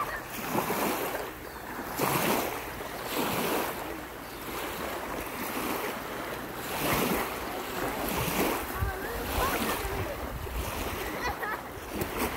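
Small lake waves lapping and washing onto a pebbly shore, swelling and fading every second or two, with wind rumbling on the microphone.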